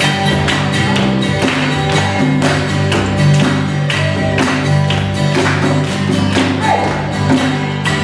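Live band playing an instrumental passage without vocals: acoustic guitar strumming and djembe hand drumming over a sustained bass line, with a steady beat of about two strokes a second.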